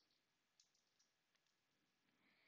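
Near silence, with a few very faint clicks in the first second.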